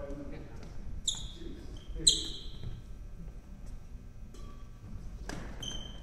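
Badminton rally in a large hall: a few sharp racket strikes and high squeaks of court shoes on the wooden floor, the loudest about two seconds in.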